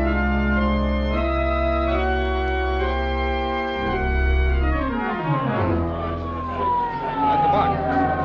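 Organ music bridge of sustained chords that sink in a falling run about halfway through. From about six seconds in, a siren sound effect winds down in pitch.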